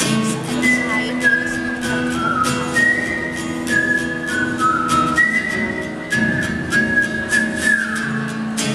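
A man whistling a melody into a microphone over a strummed acoustic guitar; the whistled tune comes in about half a second in and moves in held notes stepping up and down, ending on a falling glide.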